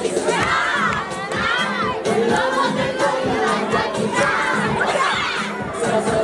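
A crowd of children shouting and cheering, many high voices overlapping in rising and falling calls.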